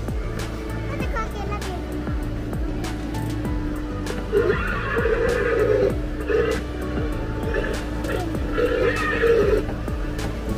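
Music playing, with a louder warbling sound in several short stretches from about four seconds in, over a steady hum. Light clicks of the small ride car running along its rail track sit underneath.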